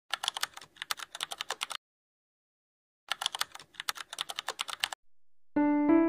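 Rapid computer-keyboard typing clicks in two bursts of about two seconds each, with a second of silence between them. Soft piano-like music comes in about half a second before the end.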